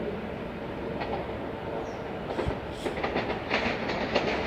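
New York City subway train wheels clattering over rail joints and switches, the clicks growing louder and quicker in the second half as the train draws nearer.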